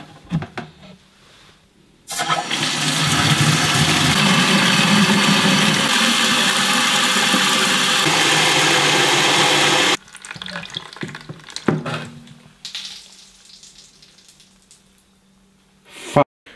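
Tap water running through a hose into a plastic watering can: a steady rush of water that starts suddenly about two seconds in and cuts off about ten seconds in, followed by a few light knocks.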